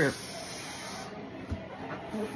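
Breath rushing into an uninflated party balloon as a man blows into it: a breathy hiss, strongest for about the first second and then softer. A dull thump about a second and a half in.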